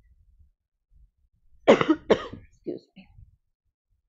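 A woman coughing: two hard coughs about half a second apart, then two softer, shorter coughs.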